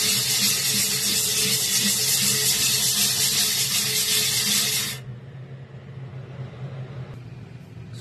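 Metal screen scrubbed by hand back and forth across the skillet's flat metal cooking surface, a loud steady scraping that stops abruptly about five seconds in. A low steady hum runs underneath.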